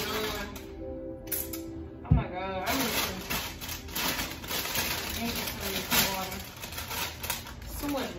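A thump about two seconds in, then a plastic bag of spinach crinkling and rustling as it is handled, over steady background music.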